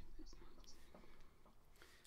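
Near silence: room tone with a faint low hum and a few faint clicks.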